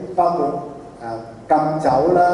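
Only speech: a man lecturing into a handheld microphone.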